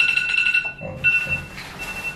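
An electronic beeper sounding a high, steady tone in three spaced beeps of differing length, the first and longest at the start, over a faint hiss.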